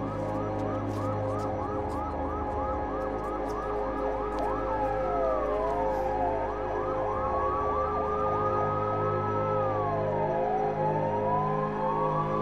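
Police car sirens: a fast yelp of about three sweeps a second, changing about four seconds in to a slower wail that rises and falls, over a steady low drone.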